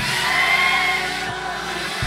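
Church band music under a steady wash of room noise: held, sustained chord tones with a low steady hum, just before the drums come in.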